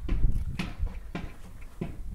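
A dog barking in a short run of about four barks, roughly every half second, with a low steady rumble underneath.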